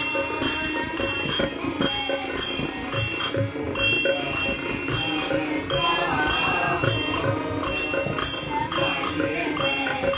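Devotional bhajan singing with small hand cymbals struck together in a steady rhythm, each stroke ringing bright and metallic over wavering voices.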